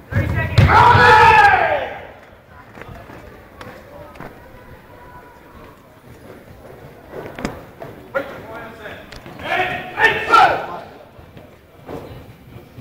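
A karate competitor's kiai, one long loud shout that rises and then falls in pitch. About seven seconds in comes a sharp knock, then a second stretch of shouting.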